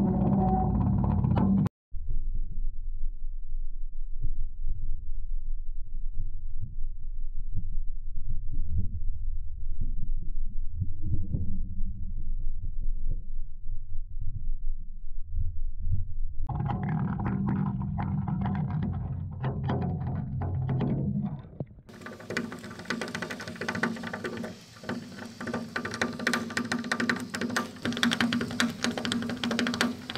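Muffled, low, irregular rumbling and burbling heard through a camera submerged in the heater tank as hot water jets in through the inlet fitting, driven by thermosiphon circulation from a copper coil in a fire. About 16 seconds in it grows brighter, and from about 22 seconds it changes to a full, hissing noise with many small clicks.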